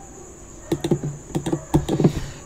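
Clicking on a computer keyboard: a quiet start, then a quick run of about seven sharp key clicks in the second half.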